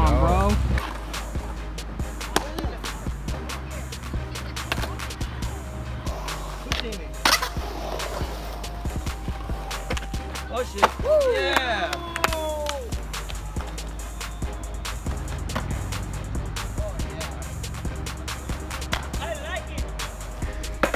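Skateboard wheels rolling on a concrete bowl with scattered sharp clacks of the board, over background music with a steady bass line.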